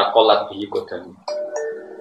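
A two-note chime, a higher note then a lower held one, like a ding-dong doorbell, starting just after a man's speech breaks off about a second in.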